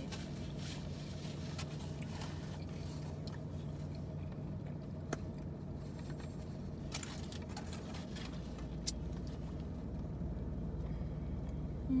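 Steady low hum of the car's engine idling, heard from inside the cabin, with a few faint clicks and rustles from food being eaten.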